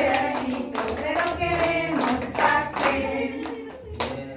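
A group of women singing together while clapping their hands along with the song.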